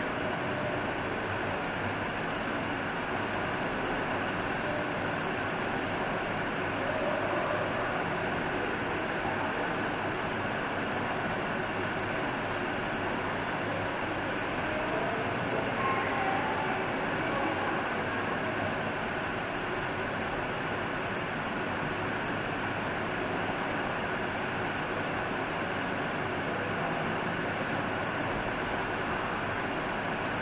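Steady, even background noise with no distinct events, the level constant throughout.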